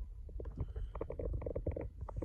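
Handling noise of a hand-held phone being moved around inside a pickup's cab: a low rumble with a quick run of soft clicks and rustles from about half a second in.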